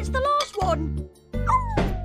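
Small cartoon dog's whining yelps, short calls sliding up and down in pitch, over background music with a steady low bass line.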